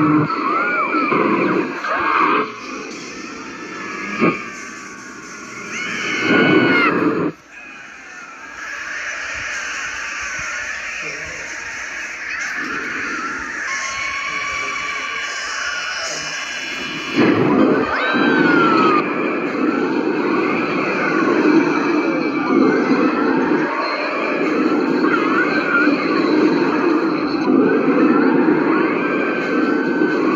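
A busy edited soundtrack of voices without clear words, music and noisy effects, with squeal-like pitch glides. It drops off suddenly at about seven seconds and swells again at about seventeen seconds.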